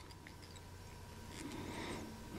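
Quiet room tone with a faint steady low hum and a soft rustle that grows slightly near the end.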